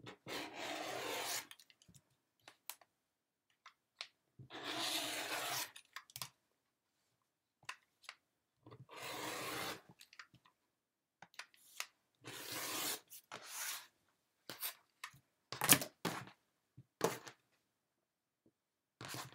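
Rotary cutter slicing through layered cotton fabric along an acrylic quilting ruler on a cutting mat: a rasping stroke of about a second, repeated about five times. Near the end come a few sharp clicks and knocks, the loudest sounds, as the ruler and cutter are moved and set down.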